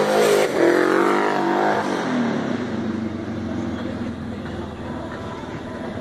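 A motor vehicle engine passing: its pitch falls over the first two seconds, then it runs on more steadily and fades away.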